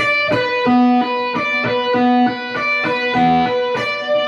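Electric guitar, a Stratocaster-style solid-body, playing a fast repeating melodic figure: notes on the high E string alternate with hammer-ons and pull-offs, with the open B string ringing between them. The short pattern comes round about three times.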